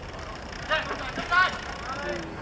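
A few short, high shouted calls from voices across a football pitch, about a second in, over steady background noise.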